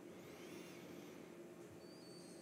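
Near silence: room tone with a steady low hum, and a few faint high-pitched chirps in the first second and again near the end.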